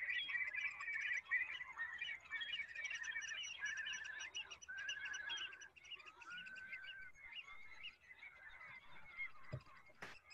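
A flock of waterfowl calling: many short, wavering calls overlapping, thinning out and growing fainter after about six seconds.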